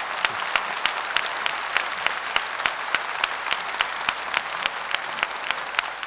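Seated audience applauding steadily, a dense patter of hand claps.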